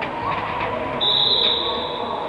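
A referee's whistle gives one short, steady, high blast of about half a second, about a second in, over the echoing background noise of a sports hall.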